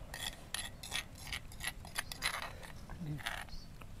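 A metal spoon scraping around the inside of a stone mortar in a run of short, sharp strokes, about three a second, clearing out the last of the ground sambal.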